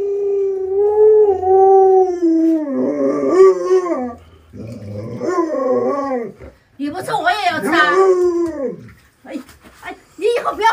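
Alaskan Malamute howling and "talking": one long, steady howl over the first three seconds or so, then three shorter, wavering yowls with brief pauses between them.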